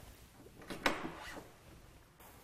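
Metal locking pin being pulled from the corner of a meal trolley's removable middle wall: two short clicks close together just before a second in, then faint handling noise.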